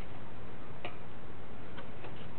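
Two short, sharp clicks about a second apart, the second fainter, over a steady low background hum.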